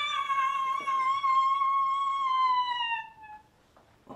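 A person's long, high-pitched crying wail, held for about three seconds and sliding down in pitch as it fades out.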